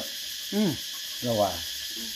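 A man's voice saying two short words, one about half a second in and one about a second later, over a steady high hiss.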